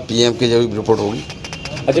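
A man speaking in Hindi, in a steady conversational voice with a short pause in the middle.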